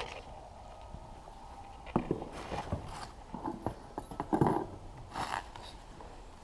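Handling noise from unpacking parts: a few scattered knocks and short rustling clatters as metal brackets and packing are moved in a cardboard box.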